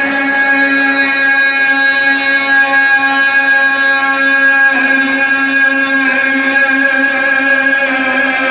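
Devotional chanting in a mosque: a long held note at a steady pitch that steps to a new held note about five seconds in.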